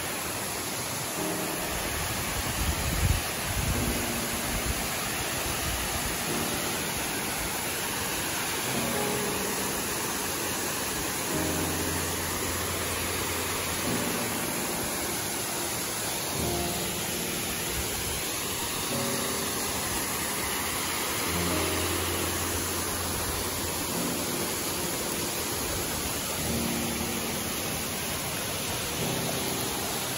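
Waterfall and rocky stream: a steady rush of falling and running water. Soft background music of short held notes comes in over it about a second in. There is a brief low bump about three seconds in.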